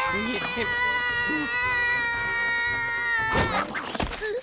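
Cartoon character voices: one long, high cry held for about three seconds and sinking slowly in pitch, with shorter, lower yelps beneath it. A short rush of noise comes near the end.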